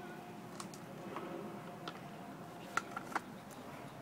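Light, sharp clicks and taps of a chainsaw's metal parts being handled as it is put back together: a handful of scattered clicks, the loudest two close together near the end.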